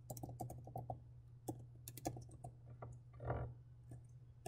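Computer keyboard typing: quick, faint, irregular clusters of keystrokes, busiest in the first second, over a steady low hum. A short soft noise comes about three seconds in.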